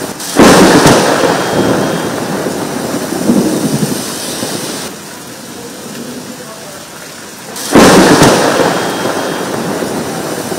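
Heavy rain in a nor'wester thunderstorm, with two sudden loud thunderclaps, one just after the start and one near the end, each rolling off over a second or two.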